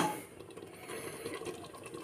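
Chicken pieces cooking in masala in an open pressure cooker: a faint, steady sizzle and bubble with small crackles.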